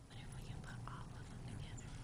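Faint murmur of several people talking quietly, with no clear words.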